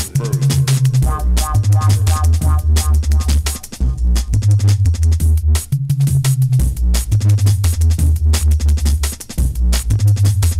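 Darkside jungle drum and bass: fast, dense breakbeat drums over a deep sub-bass line that steps between notes. About a second in, a short repeating synth figure plays over them.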